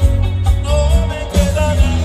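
A male lead singer singing over a live band, with heavy low bass and drums.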